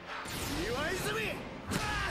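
Anime episode soundtrack playing: a character shouting in Japanese, with a sharp hit sound near the end.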